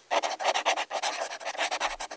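Edited-in transition sound effect: a rapid run of short hissing pulses, about seven a second, that cuts off suddenly at the end.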